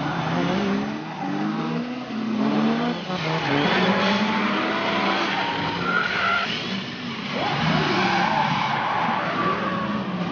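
1/10-scale electric RC drift cars (D-Like Re-R Hybrid, rear-wheel drive) running on an asphalt track, their motors whining in pitches that rise and fall with the throttle. The tyres hiss as they slide sideways through the corners.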